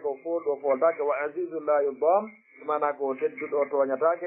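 A man speaking continuously in a lecture, with short pauses between phrases. The sound is thin, with the top cut off like a phone or radio recording.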